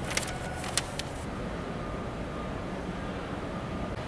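A sheet of paper being handled, crinkling a few times in the first second, over a steady low outdoor background rumble.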